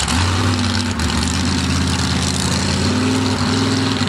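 Mud-racing truck engines running loud and steady, a low even drone with a slight rise in pitch about three seconds in.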